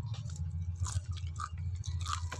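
A person chewing a bite of fried chicken, with small scattered crunching clicks over a steady low hum.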